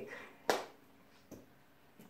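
Two short knocks of things being handled in an open refrigerator: a sharp one about half a second in, then a fainter one a little after a second.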